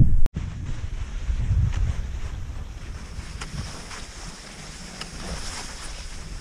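Wind rumbling on a body-worn camera microphone as a cross-country skier glides along a snowy forest track, with a few faint clicks. The sound drops out for a moment just after the start.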